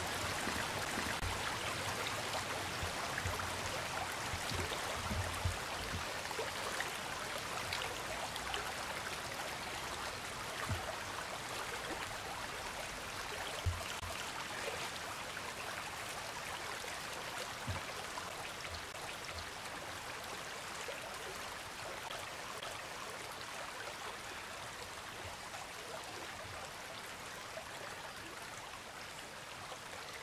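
Small stream running steadily, a continuous rush of water that slowly fades a little toward the end, with a few soft low knocks from time to time.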